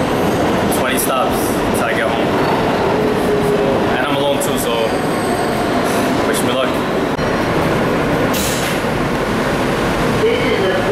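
New York City subway car in motion, heard from inside the car: the train's steady, loud running noise.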